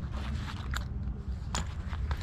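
Rustling and crinkling in several short bursts as a zippered fabric pencil pouch is handled and lifted from a table, over a steady low rumble.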